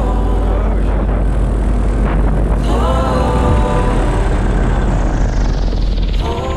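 Paramotor engine and propeller running under power with wind rushing over the microphone; near the end a high whine falls in pitch as the throttle comes off for the landing.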